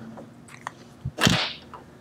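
Dry-erase marker on a whiteboard: a light tap, then a short squeaky scrape as a stroke is drawn about a second in.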